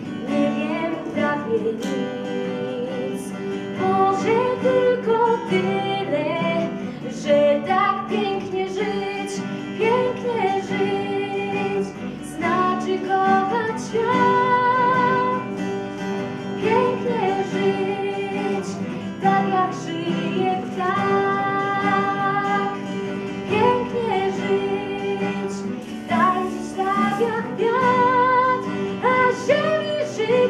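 A young woman singing a Polish song while accompanying herself on an acoustic guitar.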